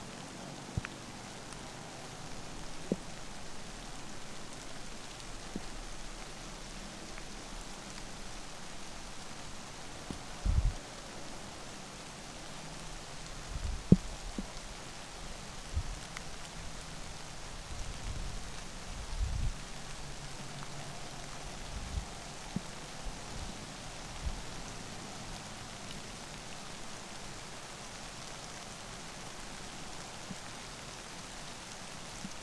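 Steady light rain pattering on the woods, an even hiss, with a few dull low bumps and one sharp click about fourteen seconds in.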